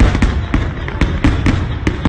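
Aerial fireworks bursting: a dense crackle with repeated sharp bangs in quick succession.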